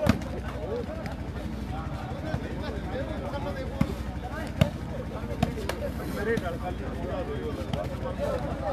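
A volleyball being struck by hand during a rally: sharp slaps, the loudest just at the start and several more spread through the rest of the rally, over a steady murmur of crowd voices.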